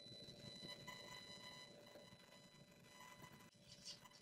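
Near silence: room tone with a faint steady electrical buzz from the recording microphone.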